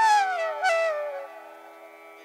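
Slow background flute music over a steady drone: the gliding melody falls and fades out about a second in, leaving the drone alone.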